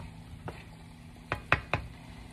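Wooden spoon stirring stir-fry in a pan and knocking against it: a single tap about half a second in, then three quick taps near the end, over a low steady hum.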